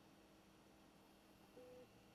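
Near silence: faint room tone, with one brief, faint steady beep about one and a half seconds in.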